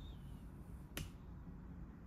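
A single sharp click about a second in, over faint room noise, with a faint high whistling tone fading out just after the start.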